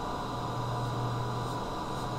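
Steady low electrical hum with an even hiss underneath, unchanging throughout: background noise of the recording.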